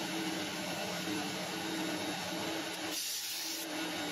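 Homemade lathe running steadily with a hum, taking a light finishing pass along an aluminium part.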